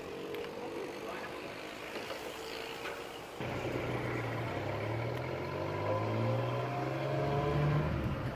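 A tuk-tuk's small engine running. About three and a half seconds in it gets suddenly louder, and its pitch climbs steadily as the tuk-tuk gathers speed.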